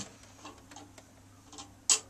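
Music playback cuts off abruptly, leaving quiet room sound with a few faint ticks. A single short, sharp noise comes just before the end.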